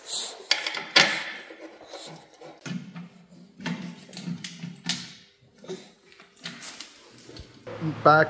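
Irregular metallic clicks and knocks of a socket ratchet and bolts being worked on an engine's bell housing.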